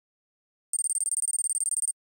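A high-pitched electronic ringing tone with a rapid trill, like a small bell or ringer, starting after a short silence and cutting off suddenly after about a second.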